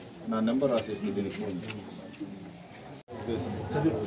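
People talking in a street crowd. The voices break off abruptly about three seconds in at an edit, and talk starts again right after.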